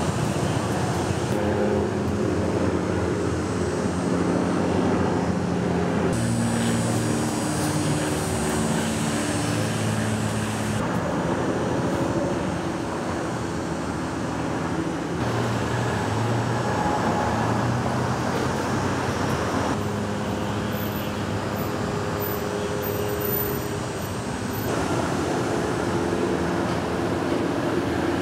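Steady hum of idling vehicle engines with low droning tones, changing abruptly several times.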